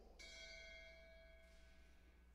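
A bell struck once, faintly, about a fifth of a second in, its several clear tones ringing on and slowly fading: a single memorial toll after a fallen officer's name is read.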